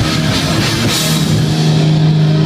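Heavy metal band playing live, with distorted electric guitars and a drum kit, recorded from the crowd. About a second in, a low note starts ringing and holds steady as the song draws to its close.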